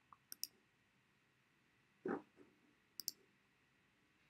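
Faint computer mouse clicks: a few short clicks in the first half-second and a quick pair about three seconds in. A brief softer sound comes about two seconds in.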